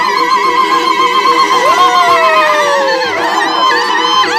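Women's high, trilling ululation cries, several voices overlapping: one long held note wavers rapidly in pitch throughout, and another cry slides slowly downward about halfway through.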